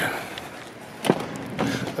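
The crew-cab rear door of a pickup truck being opened: a single sharp latch click about a second in, followed by softer handling noise.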